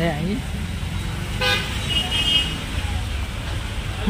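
Low, steady road-traffic rumble with a short, high vehicle horn beep about two seconds in, following a brief toot a moment before.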